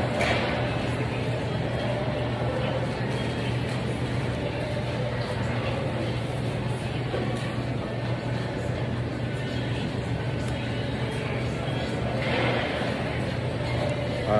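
Restaurant room noise: a steady low hum under indistinct voices and background music.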